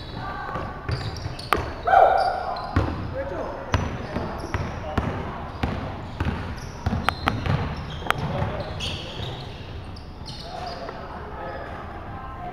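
Game sounds of an indoor basketball game in a large echoing gym: a basketball bouncing and knocking on the hardwood court, short sneaker squeaks, and players calling out, with a loud shout about two seconds in.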